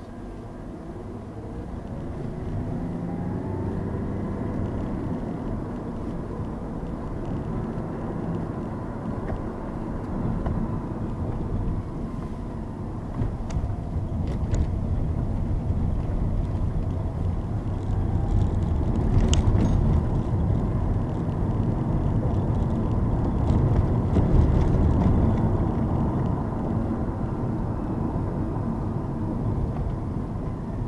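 Car engine and road noise heard from inside the cabin as the car pulls away from a stop. The engine rises in pitch over the first few seconds, then the sound settles into a steady drive with a few faint clicks midway.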